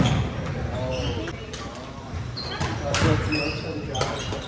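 Badminton rally on a hardwood gym floor: sharp cracks of rackets striking the shuttlecock, one at the start and the loudest about three seconds in, with short high sneaker squeaks on the court between them.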